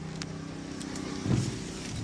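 Volvo XC90 2.4 D5 five-cylinder diesel idling with a steady low hum, heard from inside the cabin. A knock about a second and a quarter in and a few faint clicks come from the camera being handled.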